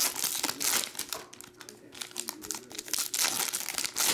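Foil wrapper of a 2021 Panini Contenders football card pack being torn open and crinkled by hand: a dense run of sharp crackles, loudest near the start and again around three seconds in.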